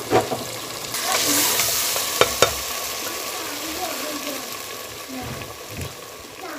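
Potatoes and aubergine frying in oil in a pot, sizzling while a spoon stirs them, with two quick knocks of the spoon against the pot a little over two seconds in.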